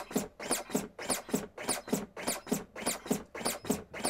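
LUCAS 2 battery-powered automated chest-compression device running on a CPR manikin, its piston driving the chest down and drawing it back up at a steady rate of about 100 compressions a minute. Each stroke down and each stroke up gives a short rising whir, so the whirs come in even pairs.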